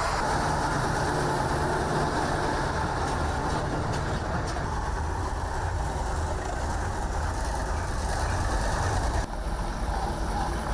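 Heavy six-wheeled military trucks driving slowly past, their engines running steadily. The sound changes abruptly near the end as the next truck comes on.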